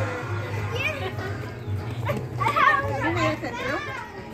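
Children's voices calling and chattering as they play, faint and indistinct at first and clearest about halfway through, over a steady low hum.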